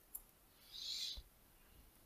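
Faint sounds at a computer keyboard: a single keystroke click, then about a second in a short soft hiss of about half a second, the loudest sound here, ending in a faint low thump.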